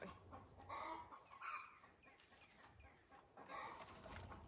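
Chickens clucking faintly a few times.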